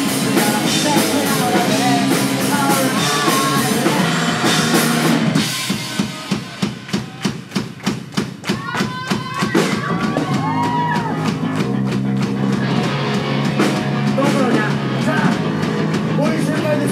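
Live rock band playing electric guitar, bass and drum kit. About five seconds in it drops to a sparse break of evenly spaced hits, about three a second, with a few sliding notes. The full band comes back in about ten seconds in.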